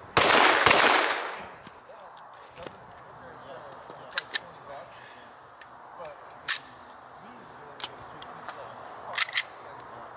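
Two semi-automatic pistol shots about half a second apart, the second's report fading over about a second. A few short sharp clicks follow later on.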